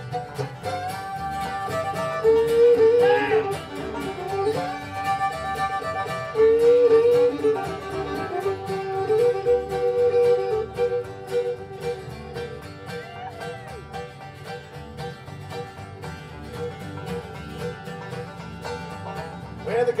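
Bluegrass band's instrumental break: a fiddle carries the melody in long, gliding bowed notes over strummed acoustic guitars, banjo and upright bass.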